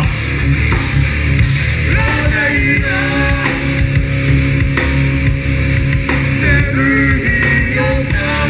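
Live rock band playing loudly through a PA: electric guitars, bass and drums, with sung vocals over them.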